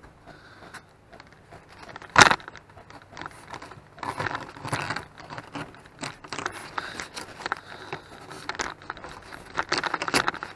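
Fabric strip glued down with Titebond II being peeled off foam board: crackling, tearing and scraping as the cured glue pulls up the foam surface, with one sharp crack about two seconds in.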